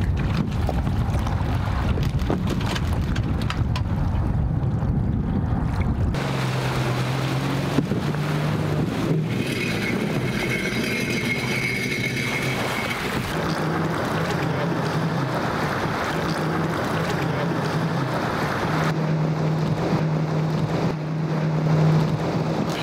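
Sea-Doo personal watercraft engine idling steadily as a low hum whose pitch shifts slightly, with wind buffeting the microphone over the first several seconds.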